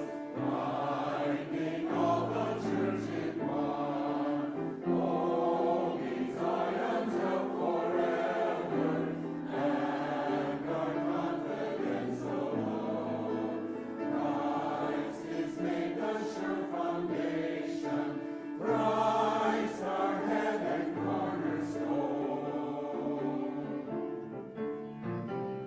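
Mixed-voice church choir of men and women singing together, full voiced and steady.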